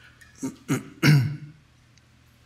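A man clearing his throat: two short rasps, then a longer, louder voiced one about a second in.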